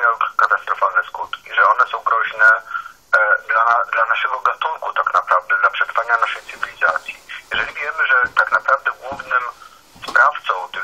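Speech only: a voice talking on without a break, thin-sounding with no bass or top end.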